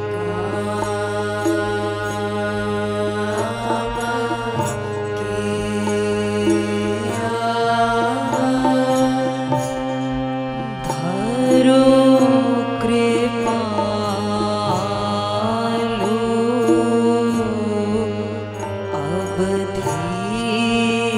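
Devotional kirtan: a harmonium holds sustained chords while voices chant the bhajan over it, the singing rising and falling most strongly in the middle stretch.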